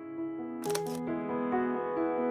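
Background music with sustained keyboard-like chords; a little over half a second in, a camera shutter fires once, a short noisy click lasting under half a second.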